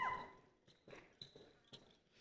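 A high-pitched whoop from the audience trails off at the start, followed by faint light footsteps on the stage, about two a second.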